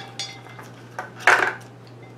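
Measuring spoons clinking and rattling as they are handled, a few short clinks with the loudest just over a second in.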